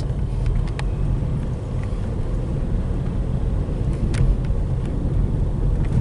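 Steady low rumble of engine and road noise heard inside a car's cabin as it drives slowly in traffic, with a couple of faint clicks.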